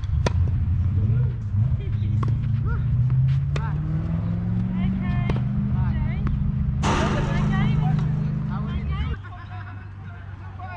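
A motor vehicle engine running close by, its pitch rising slowly and then cutting off suddenly near the end. Over it come the sharp pops of tennis balls struck with rackets several times in a rally.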